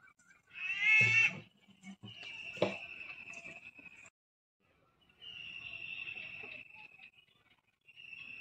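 A goat bleating once, loudly, about a second in, its pitch wavering. A steady high-pitched call in the background comes and goes, and there is a single knock.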